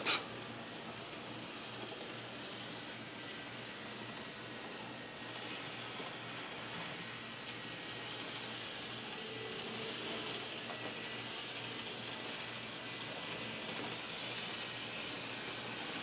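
Faint, steady whir of N-gauge Bachmann Peter Witt model streetcars running on their track loop, over a background hiss. It swells slightly in the middle.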